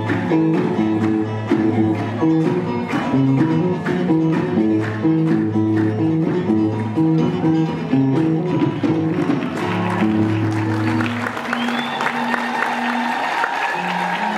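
Live band music with a steady beat, bass line and hand-clapping from a group of singers; the music ends about eleven seconds in and applause follows.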